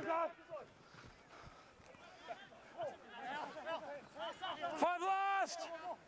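Men shouting during open play on a rugby league field: a couple of calls of "go" at the start, scattered shouts, then a long, loud held yell shortly before the end as the attack reaches the line.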